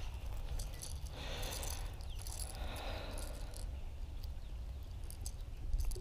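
Faint scattered clicks and rattles as a lipless rattling crankbait is handled and worked out of a bass's mouth, over a steady low wind rumble on the microphone.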